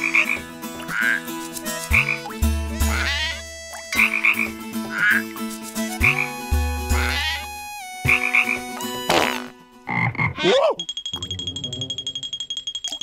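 Cartoon frog croaking: two long, deep croaks a few seconds apart, with short higher chirping calls between them. Near the end the croaking gives way to a sliding sound and a steady high ringing tone with rapid pulses.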